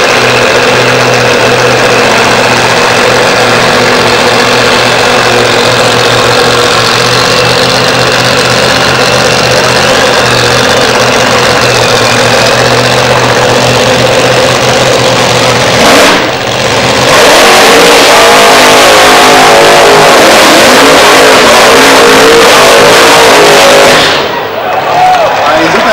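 Drag-racing car engines running loudly and steadily at the start line. After a brief break about 16 seconds in, they run at high revs, louder and rougher, with the pitch wavering.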